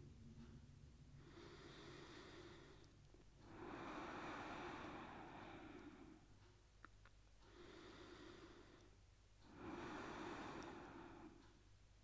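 Faint, slow, deep breathing in and out through the nose: two full breath cycles of about six seconds each, each a softer breath followed by a louder one.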